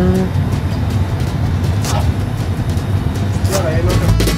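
Steady low rumble of an Airbus A320 flight simulator's engine sound, with a man's voice rising in a brief drawn-out exclamation at the very start.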